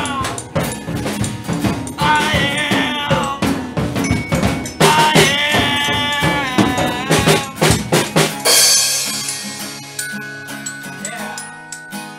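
Amateur band jamming: a drum kit beat under a singing voice. About eight and a half seconds in, a cymbal crash ends the beat and held notes ring on without drums.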